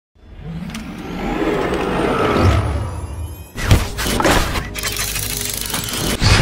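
Intro logo sound design. A swelling rise with gliding whooshes builds from silence for about three and a half seconds, then breaks into sharp impact and shattering hits leading into music.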